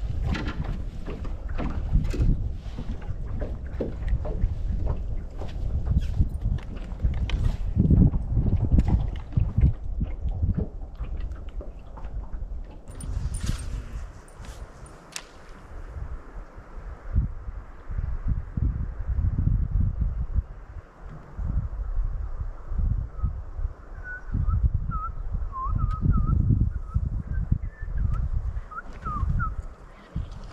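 Wind gusting on the microphone on an open boat deck, with scattered clicks and knocks in the first half. A series of short, faint bird chirps comes near the end.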